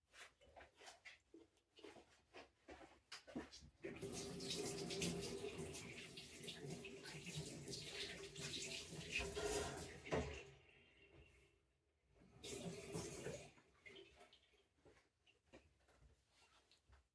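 Kitchen tap running into a sink for about six seconds, turned off, then run again briefly a couple of seconds later. Light clicks and knocks of handling come before it.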